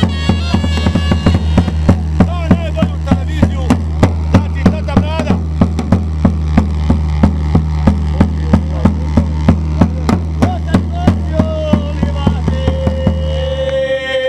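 Folk music: a large double-headed drum struck with a wooden beater in a steady beat, about three strokes a second, over a low continuous drone. A wooden pipe plays a melody at the start, and a long held note sounds near the end as the drone stops.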